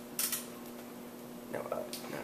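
A quick metallic clink, a double tick of metal on metal, about a quarter second in, over a steady faint hum.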